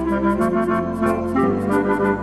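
Flute and clarinet playing a pop-song melody over a backing track of sustained organ-like keyboard chords and a steady bass, with a light ticking beat on top.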